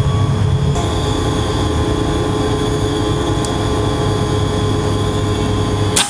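A steady mechanical drone, like a motor or engine running, holding an even level and cutting off abruptly at the end.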